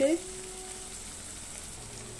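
Chopped onion and tomato frying gently in oil in a kadai over a low gas flame: a steady, soft sizzle.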